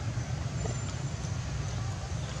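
Steady low rumble of background noise, even throughout, with no distinct calls or knocks.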